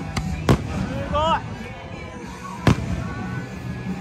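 Aerial firework shells bursting overhead: two sharp bangs about two seconds apart, the first just after a softer pop.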